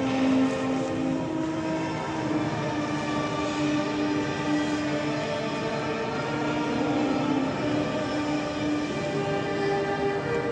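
Vietnamese funeral music: long held notes on a wind instrument, rich in overtones, moving to a new pitch every few seconds.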